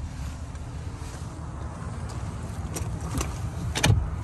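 Steady low rumble, with a few light plastic clicks and a thump near the end as a fold-down floor cup holder at the back of a pickup's centre console is flipped.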